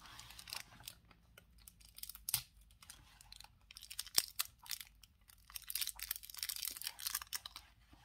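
Crinkling and rustling of a paperback word-search book's pages as it is handled, with scattered sharp clicks, busiest in the second half.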